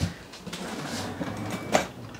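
Gaggia Classic Evo Pro espresso machine running with its cover off: a click at the start, then a steady low hum, with a brief louder noise near the end.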